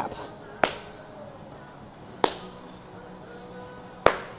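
A single person's slow handclaps, widely spaced: one clap about half a second in, another about a second and a half later, and a third right at the end. It is a lone, pitying slow clap.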